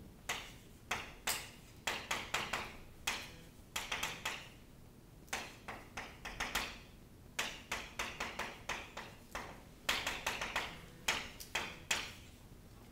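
Chalk writing on a chalkboard: a string of quick, irregular taps and short scratches as letters and words are written, with brief pauses between groups of strokes.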